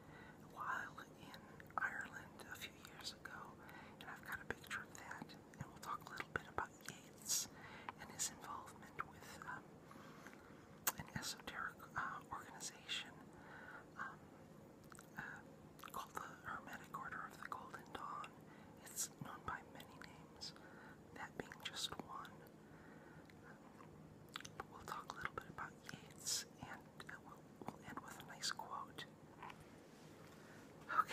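Soft whispered talking, with sharp hissing s-sounds throughout.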